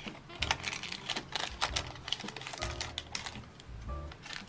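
Stiff paper cutouts and small paper sleeves handled by hand: a quick, uneven run of light paper clicks and crinkles. Background music with a steady bass plays underneath.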